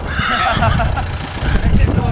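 A man's short laugh, then faint indistinct voices, over a low gusty rumble of wind on the microphone.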